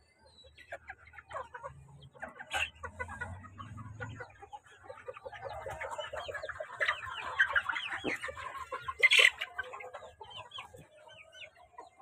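A flock of chickens clucking and calling, many overlapping short calls that grow busiest in the second half. Two loud sharp sounds stand out, one about two and a half seconds in and a louder one about nine seconds in.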